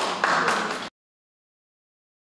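Indistinct voices in a room with a few light taps, cut off abruptly a little under a second in, followed by complete silence.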